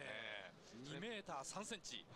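A man's voice, faint, drawing out a long wavering vowel at the start and then speaking in short phrases.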